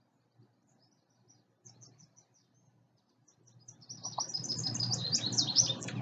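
Songbirds chirping: faint scattered chirps at first, then from about four seconds in a fast run of high, repeated chirps that grows louder.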